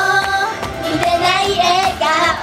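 A group of young female idol singers singing a J-pop song together into microphones over a pop backing track with a steady beat. Their voices hold notes and slide between pitches.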